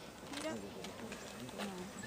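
Faint, indistinct voices: a few short words from people near the camera, over a steady background hiss.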